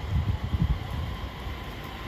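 E231 series commuter train moving off slowly, its snowplough pushing through snow on the track: a low rumble with a few heavier bumps in the first second.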